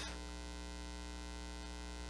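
Faint, steady electrical mains hum: one low buzz made of many even tones, with a light hiss over it.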